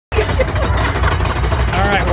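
Fairground din: a steady low rumble with a haze of background noise, and voices, one rising and excited near the end.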